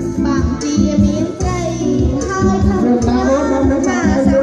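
Live amplified music: a singer on a microphone over an electronic keyboard with a regular low beat.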